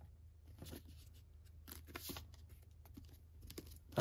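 Faint rustles and light scrapes of paper and cardboard as hands handle a manga volume and slide it into its cardboard box set, over a low steady hum.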